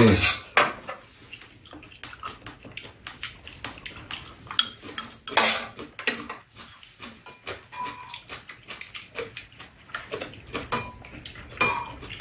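Metal spoons clicking and scraping against ceramic bowls of fried rice in short, irregular taps, with eating sounds in between.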